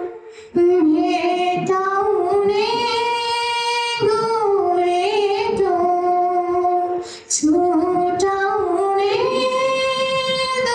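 A young woman singing solo into a microphone, a slow melody of long held notes, with short breaths about half a second in and about seven seconds in.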